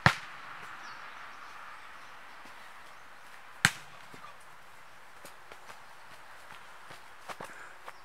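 A soccer ball kicked hard twice on a grass field: two sharp, loud thuds, one right at the start and one about three and a half seconds in. A few faint knocks follow near the end.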